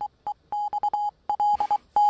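Morse code telegraph beeps: a single steady tone keyed on and off in a quick run of short and long pulses, spelling out a message.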